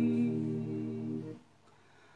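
A man's voice holding one long sung note with no guitar strumming under it; the note stops about one and a half seconds in, leaving near silence.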